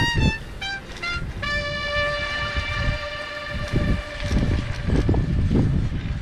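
Low, gusty rumble of wind and road noise from an electric-assist bicycle riding along a paved street. Over it, a few short tones in the first second and then one ringing tone with several overtones that fades away over a few seconds.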